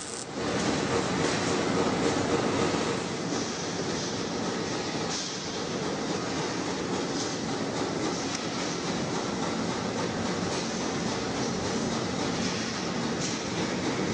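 Steady machinery noise of a steel fabrication shop floor, louder for the first few seconds.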